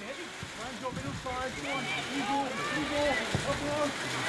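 Several voices shouting and calling indistinctly across a women's football pitch: players and touchline calling during play.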